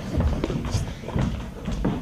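Audience laughing, with footsteps and thuds on the stage floor as performers move about.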